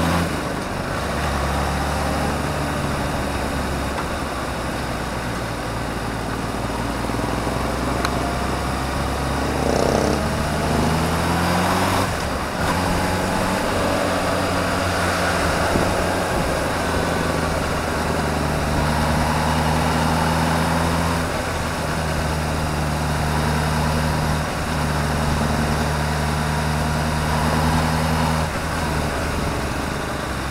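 Sport motorcycle engine running under way at riding speed, with wind rush. Its pitch climbs as it accelerates about eight to twelve seconds in, breaks briefly as it changes gear, then holds fairly steady at cruise.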